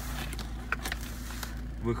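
Steady low hum inside a UAZ Patriot's cabin, with one sharp click a little under a second in.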